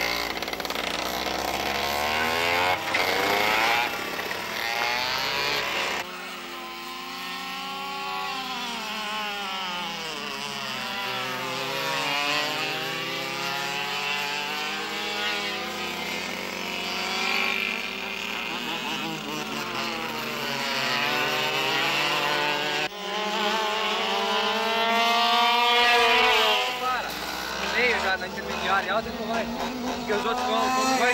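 Go-kart engines running hard on a track, their pitch rising and falling over and over as the karts accelerate and lift off through the corners. The sound changes abruptly twice.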